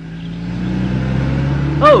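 A car engine running and growing louder over the first second or so, as of a car pulling up.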